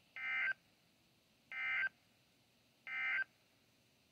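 Three short bursts of warbling digital data tones from the weather radio's speaker, evenly spaced about a second and a half apart: the NOAA Weather Radio SAME End Of Message code that closes the severe thunderstorm warning.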